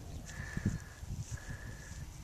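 Faint soft knocks and scuffs of soil being dug and handled, with the faint steady high tone of a metal detector sounding twice.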